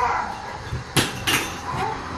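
Two sharp knocks of a small hard object, about a second in and a third of a second apart, after the tail of a short voiced 'oo' at the start.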